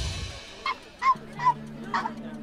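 Background music fades out, then a run of short, high animal cries, four in under two seconds, each falling in pitch at the end. A low steady musical drone enters partway through.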